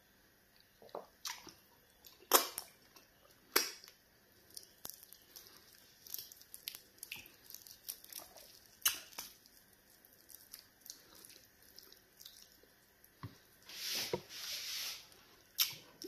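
Close-miked eating of pounded yam dipped in egusi soup: wet chewing and lip smacks with irregular sharp mouth clicks, and a longer hissing slurp or breath about fourteen seconds in.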